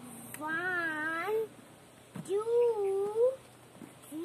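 A high voice counting aloud in two long, drawn-out, sing-song calls about two seconds apart, one for each step onto a basin.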